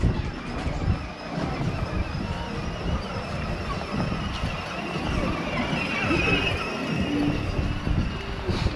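Outdoor ambience of a busy pedestrian promenade heard while walking: a continuous uneven low rumble with scattered voices of passers-by.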